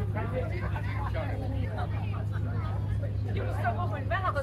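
Murmur of people's voices in the open over a steady low hum.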